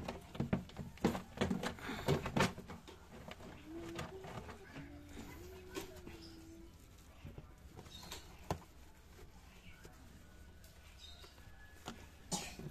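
A damp cloth scrubbing the inside of a wet plastic tub, with rubbing noises and knocks of the tub that are busiest in the first couple of seconds. Scattered clicks follow later on.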